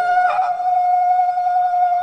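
One voice holding a single long, high note, steady in pitch, the drawn-out last note of a group chant.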